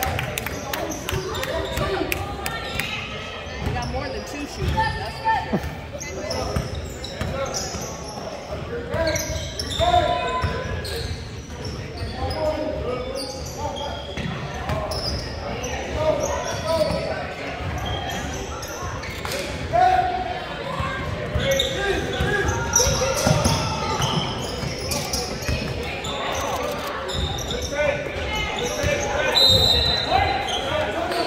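Basketball game in a large gym: a ball bouncing on the hardwood floor again and again, under a continuous hubbub of indistinct voices from players and spectators.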